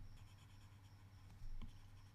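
Faint stylus strokes scratching and tapping on a tablet screen as a circle is coloured in, with a short louder scratch about one and a half seconds in, over a low steady hum.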